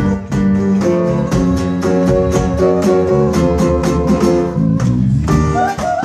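A small live band playing a disco tune, with strummed acoustic guitar and electric bass over a steady beat.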